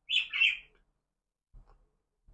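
Close-miked chewing mouth sounds while eating a sushi roll: two short, wet smacks right at the start, then a faint soft chewing sound near the end.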